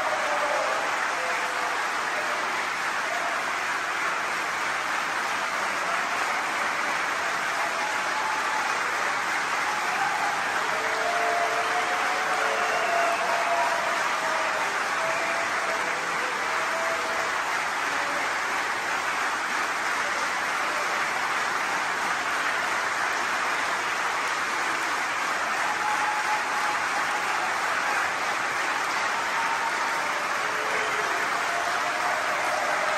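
Large concert audience applauding steadily and without letting up, with a few brief calls rising above the clapping.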